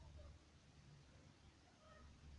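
Near silence with a faint low rumble, and a faint short pitched call near the end.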